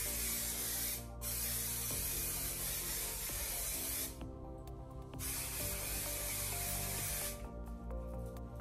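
Aerosol hairspray sprayed onto hair in three hissing sprays, each one to three seconds long, the middle one the longest.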